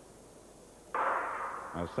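Starter's pistol firing for the start of a 100 m hurdles race about a second in: one sharp bang with a short echoing tail that fades within about a second.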